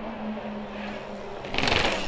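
Enduro mountain bike rolling across a concrete plaza, with a short, louder rasping burst from the bike as it comes close, about one and a half seconds in. A steady low hum runs underneath.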